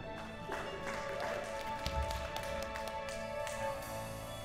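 Keyboard holding soft sustained chords, the opening of the next worship song, with a few light taps over it.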